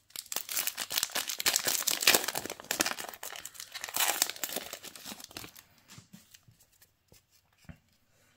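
Foil booster-pack wrapper crinkling and tearing as it is ripped open along its crimped top. The crackle is dense for about five seconds, then thins out to a few faint rustles.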